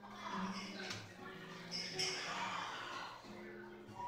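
Live music with several held notes, and voices talking in the room.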